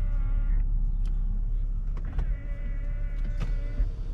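Power-folding side mirrors of a 2019 Mercedes GLS450 whirring as their electric fold motors run: one short run that stops about half a second in, then a longer one from about two seconds in until near the end, with clicks as the mirrors stop.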